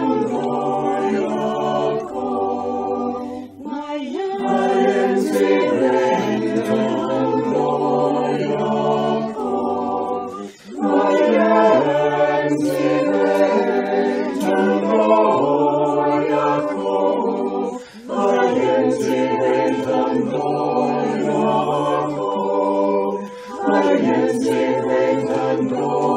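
A choir sings a short repeated chant as a sung response between spoken prayers. The voices are in several parts over held low notes, in phrases of about seven seconds with brief breaks between them.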